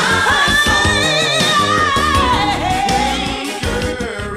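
A gospel song: a singer holds a long note with vibrato, then the line slowly falls, over band accompaniment. The level begins to drop near the end as the song fades out.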